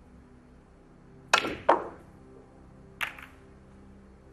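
Snooker balls clicking: a sharp click as the cue strikes the cue ball about a second and a half in, a second ball-on-ball click just after, and a third click about three seconds in as the cue ball runs into the pack of reds and splits it.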